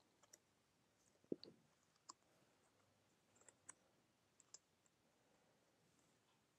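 Near silence, broken by a few faint, soft clicks and taps as small flat sheep figures are set down inside a wooden sheepfold frame on a felt mat.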